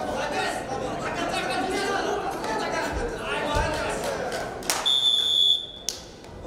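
Voices and calls of spectators and coaches in a sports hall, then, near the end, a sharp knock followed by one high, steady electronic beep about a second long: a wrestling timer's signal for the end of the bout.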